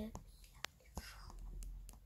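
Faint, soft whispering from a person, with a few light clicks.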